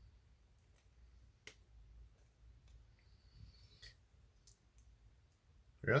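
Faint, scattered clicks and small creaks of a stuck paint tube cap being twisted and wrenched by hand; the dried-in cap will not come off.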